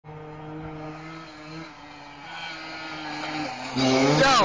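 Small youth ATV (quad bike) engine running at a steady pitch with small shifts in throttle, growing gradually louder. A man's voice cuts in near the end.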